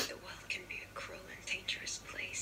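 A person whispering indistinctly, in short broken fragments with strong hissing consonants, after a short sudden noise at the very start.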